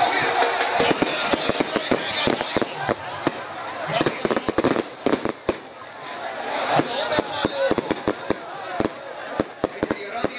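A rapid, irregular string of sharp cracks and pops over the shouting voices of a crowd.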